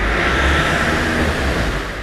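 Road traffic on wet asphalt: a steady hiss of tyres on the wet road over a low engine rumble.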